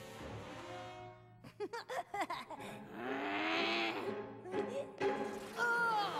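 Cartoon soundtrack: background music under a character's yelps and cries, which start about a second and a half in. A stretch of rushing noise comes in the middle.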